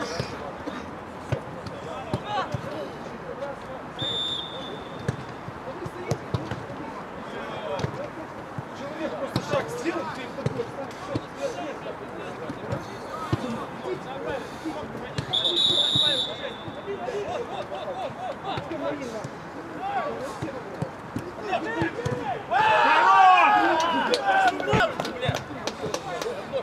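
Amateur football match on an artificial pitch: players calling out, with repeated sharp thuds of the ball being kicked. Two short whistle blasts come at about 4 s and 15 s, and a loud burst of shouting near the end.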